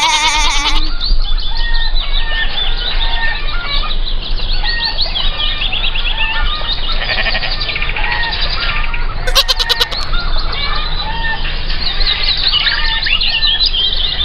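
Countryside sound-effect bed: many small birds chirping and twittering throughout. A farm animal bleats in a quavering call at the start and again about nine and a half seconds in.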